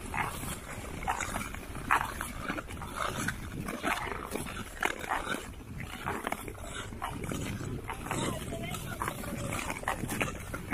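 Ice skates striding over clear black lake ice: a crisp blade stroke about once a second over a steady low hiss of gliding.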